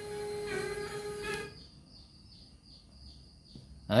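FM radio broadcast of music with sustained singing tones, playing through the speakers of a Sony LBT-A490K mini hi-fi, that cuts off abruptly about a second and a half in, leaving only a faint hiss with soft pulses.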